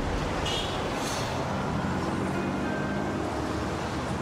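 Steady traffic and car noise heard from inside a car, with background music playing alongside.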